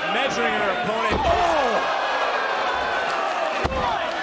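Heavy thuds on a wrestling ring's canvas, one about a second in and another near the end, over crowd noise and shouting voices.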